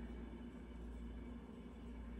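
Faint room tone with a steady low hum; no distinct sound stands out.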